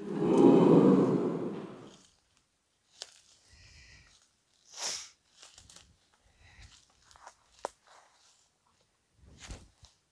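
Footsteps crunching through dry fallen leaves, scattered and faint, walking down a slope. A loud breathy rush of noise comes first and lasts about two seconds.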